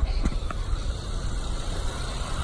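Honda Jazz engine idling steadily with all its electrical loads switched on (lights, hazards, main beam, heater and aircon), with a couple of light taps in the first half second.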